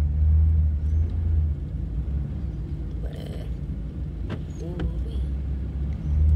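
Car engine and road noise heard inside the moving car's cabin: a steady low drone, strongest for the first second and a half, then easing off as the car pulls in to park.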